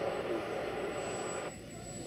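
Jet-powered Polaris RZR's helicopter turbine engine running at low power as the vehicle rolls slowly, with a steady high turbine whine.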